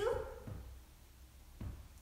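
A brief high, rising voice-like call at the very start, then a low-level lull with two soft thumps as two canvas handbags are lifted and held up.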